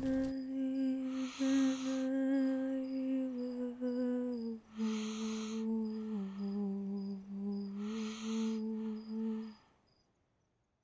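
A woman's voice humming a slow tune in long held notes, dropping lower about halfway through, over crickets chirping steadily about twice a second. The humming stops just before the end.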